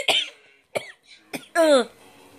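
A woman coughing: two short coughs, then a louder, longer voiced one near the end.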